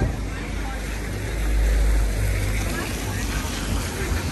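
Outdoor street noise on a wet high street: a low rumble swells to its loudest about a second and a half in, then eases back.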